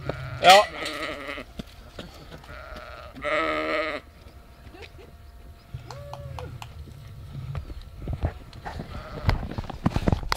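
Sheep bleating: one loud, quavering bleat of under a second about three seconds in.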